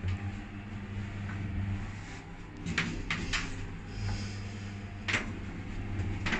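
Otis passenger elevator car running, heard from inside the cab: a steady low hum, with several short sharp clicks in the middle and near the end.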